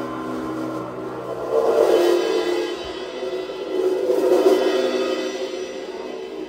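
Live band playing a slow passage of long ringing chords with the drum kit, swelling loudly twice, about two seconds in and again about four seconds in, with cymbals washing under the swells.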